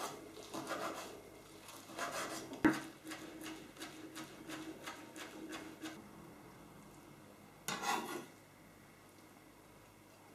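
Chef's knife chopping soft, thawed spinach on a wooden cutting board: a run of quick strokes over the first half, with one sharper knock standing out. One brief noisy sound follows a little later.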